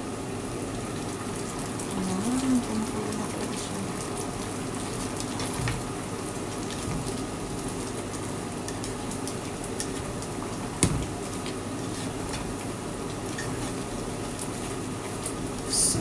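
Squash simmering in coconut milk in a frying pan, a steady bubbling hiss, while a slotted spatula stirs through it with small scraping ticks and one sharper knock about two-thirds of the way through.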